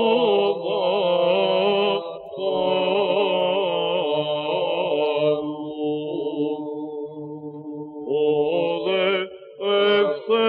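Byzantine chant in plagal fourth mode: a solo cantor singing a slow, ornamented melismatic line over a steady held drone (ison). The singing breaks off briefly for breath about two seconds in and again near the end.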